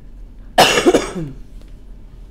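A person coughing once, a loud burst about half a second in that dies away within a second.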